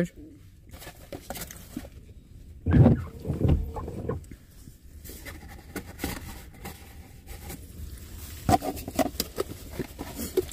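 Light handling noises: clicks and rustles of a small cardboard box being passed and handled, with a sharper knock near the end. A brief low, muffled voice comes about three seconds in.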